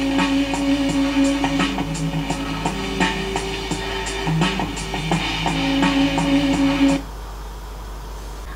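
Band music with guitar and drums, played off a reel-to-reel tape through a homebuilt tube amplifier stage into a small speaker, louder now that the stage's cathode resistor has a 470 µF capacitor across it. The music cuts off about seven seconds in, leaving a low hum.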